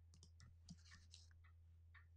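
Near silence with a dozen faint, scattered computer-mouse clicks over a steady low hum.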